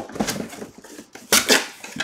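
Objects being handled and set down on a table: rustling and clattering, with two loud knocks close together about a second and a half in.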